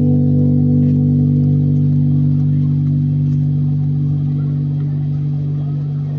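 Electric bass guitar holding one sustained chord, ringing steadily and slowly fading.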